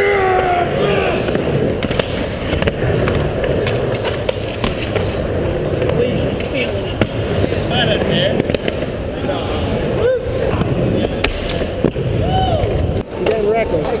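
Skateboard rolling on a concrete mini ramp, with several sharp knocks and clacks from the board, over a steady low rumble and the chatter and shouts of onlookers.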